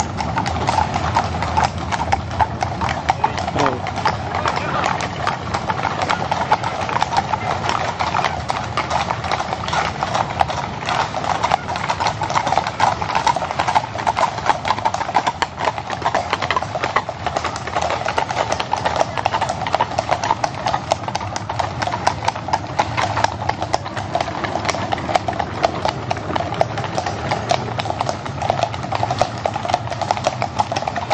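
Hooves of several carriage horses clip-clopping on an asphalt road as horse-drawn carriages pass one after another, a dense, unbroken clatter of hoofbeats.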